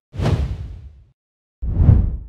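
Two whoosh transition sound effects, each a rush of noise with a heavy low end. The first lasts about a second; the second begins near the end.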